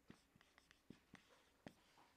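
Faint marker pen writing on a whiteboard: a handful of short, scratchy strokes and taps as a term is written out.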